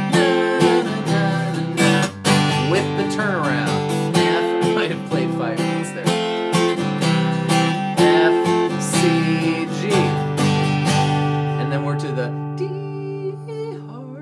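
Cutaway acoustic guitar strummed in a steady rhythm of chords. About two seconds before the end it stops on one chord, which is left to ring out and fade.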